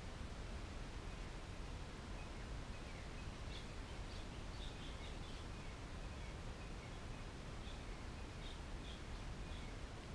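Quiet outdoor ambience: a steady low hum and hiss with scattered faint bird chirps, coming more often from about three seconds in.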